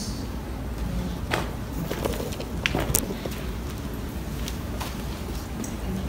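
Low room hum with a handful of sharp, light clicks and knocks in the first half, the kind of handling noise a handheld microphone picks up.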